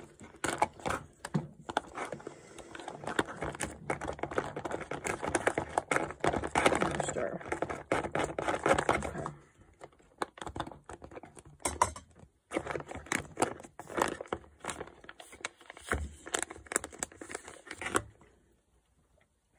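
A foil food pouch crinkling while a long-handled spoon clicks and scrapes against it and a cook pot. The sound is dense and crackly for the first half, then thins to scattered clicks.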